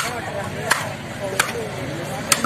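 A heavy cleaver chopping through a kilathi fish on a wooden block: three sharp strikes about 0.7 s apart.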